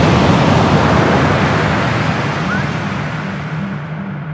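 Breaking surf: a loud rush of crashing wave and whitewash noise that swells in and slowly fades, over a low sustained synth drone.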